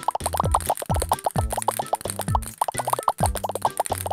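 Background children's music with a rapid, even string of short cartoon 'plop' sound effects, several a second, for little balls dropping into place.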